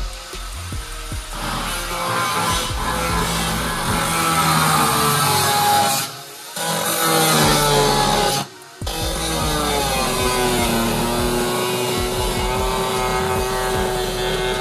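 Cut-off wheel grinding through the car's sheet-metal body: a continuous high, harsh cutting noise with a motor pitch that sags and recovers under load, cutting out briefly twice in the middle. Background music plays along with it.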